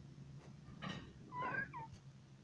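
A short, high mewing call with a wavering pitch that falls at its end, lasting about half a second, just after a brief breathy rustle.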